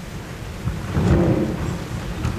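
Low rumbling, rustling noise that swells about a second in.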